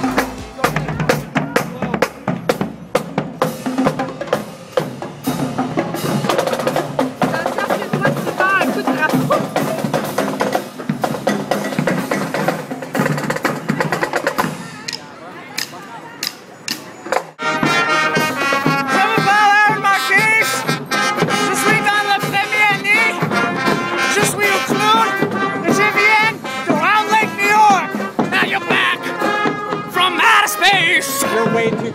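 Marching band playing: snare and bass drums beat a steady cadence, then after a brief quieter stretch the brass, trumpets among them, comes in about two-thirds of the way through and plays over the drums.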